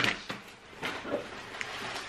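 Grocery packages being handled and shifted on a table: soft rustling of plastic wrapping with a few light knocks.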